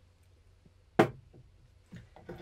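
A glass perfume bottle set down on a hard surface: one sharp knock about a second in with a brief ring, then a few faint ticks.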